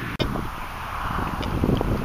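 Wind buffeting the microphone outdoors, an uneven low rumble, with a brief dropout just after the start.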